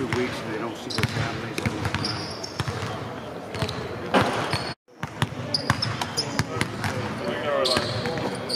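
Basketballs bouncing on a hardwood arena court during shooting practice: irregular thuds throughout. The sound drops out for a moment about halfway through.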